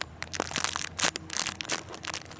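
Clear plastic packaging crinkling in quick, irregular crackles as fingers squeeze and handle a squishy toy through the bag.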